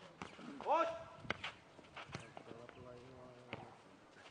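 Several sharp thuds of a ball being kicked and bouncing on a clay court, with a short shout from a player just under a second in.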